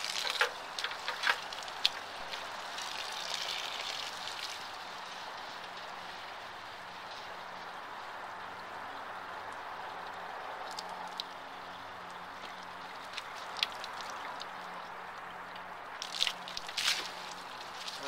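Water from a garden hose running steadily into a Ford Model A radiator as it is filled for a flow test. A few light knocks come near the start and near the end.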